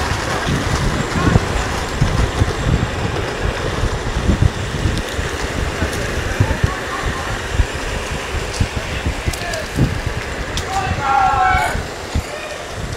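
Riding an electric skateboard fast along a paved path: steady rumble of the wheels on the pavement with wind buffeting the microphone. A voice calls out briefly near the end.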